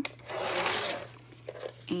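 Sliding paper trimmer cutting once through a sheet of paper: a single scraping stroke, under a second long, of the blade head drawn along the rail.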